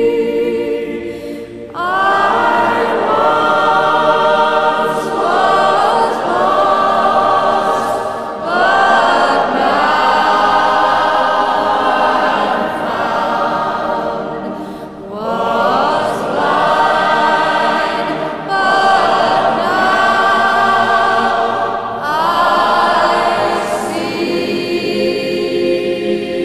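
A choir singing slow, sustained phrases, with brief breaks between them.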